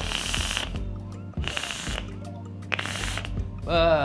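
Three short puffs on a dual-coil rebuildable dripping atomizer (RDA) vape. Each puff is a burst of airy hiss about half a second long, with about a second between them.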